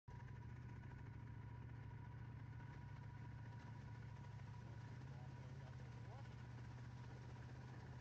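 Near silence: a faint, steady low hum with no distinct events.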